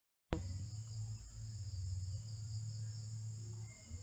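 Dead silence, cut off by a click about a third of a second in, then steady background noise of a home voice recording: a low electrical hum with a thin, steady high-pitched hiss or chirring above it.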